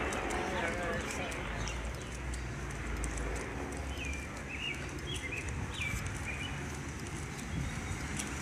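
Outdoor street ambience: indistinct voices of people nearby over a steady low rumble, with a few short high chirps in the middle.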